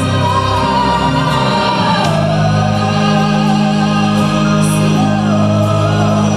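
Symphonic metal band playing a slow, jazzy ballad live, with a female lead voice holding long, wavering sung notes over sustained low bass and keyboard chords. The sung line drops lower about two seconds in.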